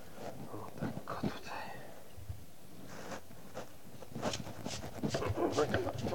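A knife working a raw sweet potato on a wooden cutting board: scattered light knocks and scrapes, turning into a quicker run of short scraping strokes in the last two seconds.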